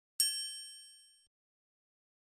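Logo-sting chime sound effect: a single ding, struck just after the start, whose several high ringing tones fade out over about a second.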